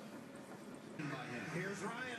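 Faint steady background hiss, then a voice starts speaking about a second in.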